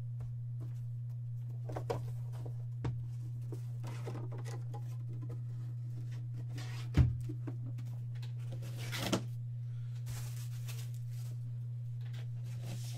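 Cardboard card boxes and packaging handled on a tabletop: scattered light taps and rustles, a sharp knock about seven seconds in and a scraping rustle about two seconds after it, over a steady low hum.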